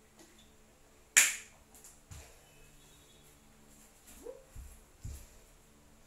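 A single sharp plastic snap about a second in, from a sports water bottle being closed, followed by a few soft low thumps of someone shifting and getting up on an exercise mat on a wooden floor.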